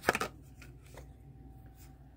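Hands handling a blister-carded Hot Wheels car: a quick cluster of clicks and rustles of cardboard and plastic blister right at the start, then a couple of faint taps over a low room hum.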